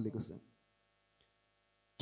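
A man's voice ends in the first half second, then near silence with a faint steady electrical hum.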